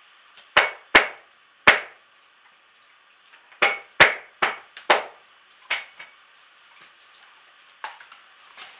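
Wood cracking at a fire as it is being lit: a string of sharp, loud cracks, each ringing briefly, about nine in all, coming in two irregular clusters with a last one near the end.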